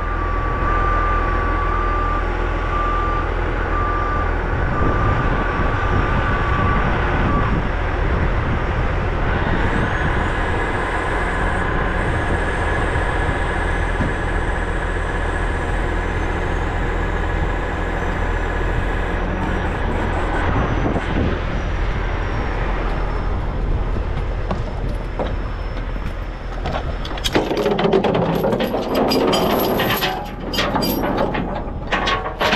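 Heavy truck diesel engine running steadily, with a backup alarm beeping for the first seven seconds or so. Near the end comes a spell of metallic rattling and clanking.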